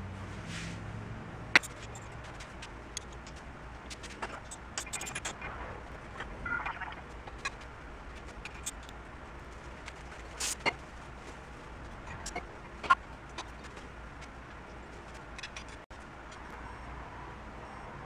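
Faint, scattered clicks and light knocks of hand work on a motorcycle's front fork tubes and triple clamps while the fork heights are reset, over a low steady hum.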